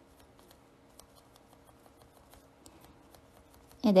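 Faint, irregular light taps and clicks of a small sponge brush dabbing paint gel onto a plastic nail tip through a stencil, over a faint steady hum. A woman's voice starts right at the end.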